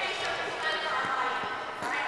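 Indistinct voices echoing in a large hall, with a few faint thuds of a ball striking the walls of a glass-backed racquet court.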